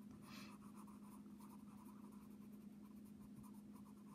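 Faint scratching of a red coloured pencil on paper as a circled vowel is coloured in, over a steady low hum.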